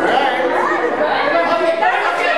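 Several people talking over one another in a lively chatter.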